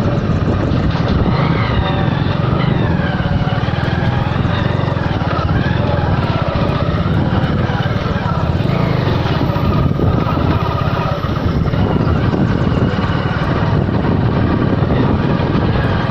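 Motorcycle riding noise: the engine running steadily while wind rushes over the microphone.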